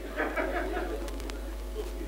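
Brief indistinct talk in the first second, then a few light clicks, over a steady low hum.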